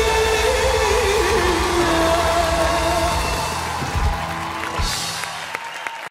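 Live band and male vocalist ending an Arabic pop ballad. The singer holds a long final note that wavers and dies away about halfway through, while bass and drums carry on. The band closes with two low drum hits about a second apart and a cymbal wash, and the music fades.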